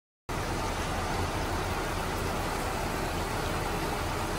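Steady rushing background noise with a low hum, cutting in abruptly a moment in after dead silence and holding even throughout.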